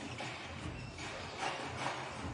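Basketball game court sound: a ball being dribbled on a hardwood court, with a couple of sharper bounces late on, over a steady murmur of arena crowd noise.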